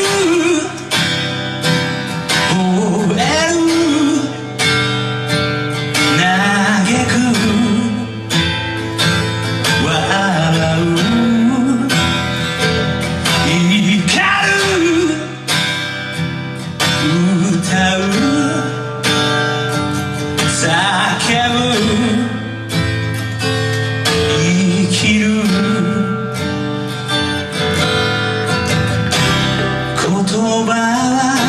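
A male singer performing a song live, singing over strummed acoustic guitar, backed by upright bass and drums.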